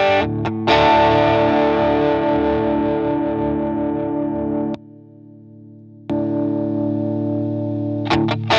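Overdriven electric guitar (a PRS CE 24) through a Klon-style overdrive pedal: a chord is struck just under a second in and left to ring, slowly fading. Almost five seconds in the sound suddenly drops to a quiet, duller ring for about a second, then jumps back to full level as the pedals are switched over from the Caline CP-43 Pegasus to the Chellee Ponyboy overdrive.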